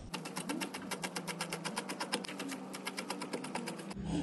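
Chef's knife chopping fresh parsley on a wooden cutting board in rapid, even strokes, about nine or ten a second.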